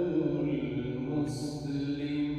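A solo male voice reciting the Quran in melodic tajweed style, holding long drawn-out notes, with a short hissing consonant about two-thirds of the way through.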